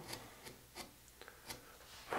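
Faint scraping of a No. 11 gouge (veiner) paring chips from limewood, as a few soft, separate strokes.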